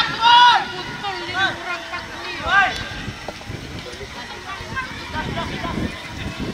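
Shouted calls from players and onlookers at an outdoor football match, loudest right at the start and again about two and a half seconds in, over lower scattered voices.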